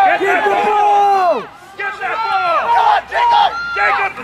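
Several voices shouting over each other during rugby play: a long yell held for over a second that then drops in pitch, followed by more short overlapping shouts.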